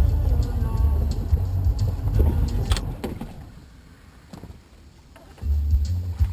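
Low, uneven rumble from a moving wakeboard boat, fading away for about two seconds midway and coming back near the end, with a single sharp knock just before it fades.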